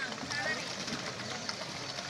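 Children's voices chattering and calling over a pond, over the steady splashing of small pedal boats' paddle wheels churning the water.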